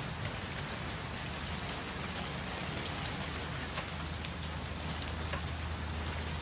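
Heavy rain falling steadily, hissing evenly, over a low steady hum.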